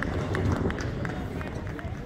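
Players' footsteps running on a court: a quick, irregular series of foot strikes, with voices around them.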